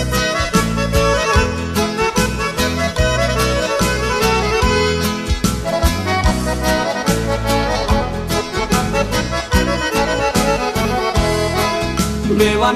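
Instrumental introduction of a sertanejo song: accordion carrying the melody over bass and a steady drum beat.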